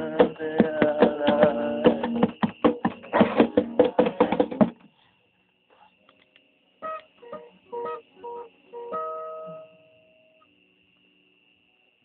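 Acoustic guitar strummed fast and rhythmically, stopping abruptly about five seconds in. After a short pause, a few single notes are picked one by one, and the last is left ringing.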